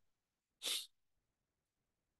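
A single short, breathy puff of air from a person, a quick exhale or sniff lasting about a quarter of a second, a little over half a second in.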